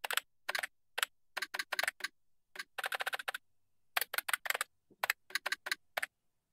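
Computer keyboard typing: short runs of quick keystrokes with brief pauses between them.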